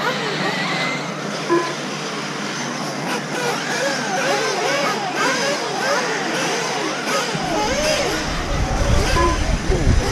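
Several electric RC racing buggies running on a dirt track, their electric motors whining up and down in pitch as they accelerate and brake, many overlapping. A low rumble joins about seven and a half seconds in.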